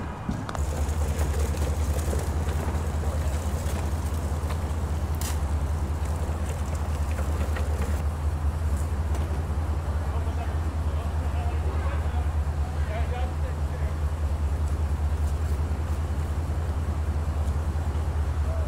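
A fire engine's diesel engine idling, a steady low drone that starts about half a second in, with faint voices over it.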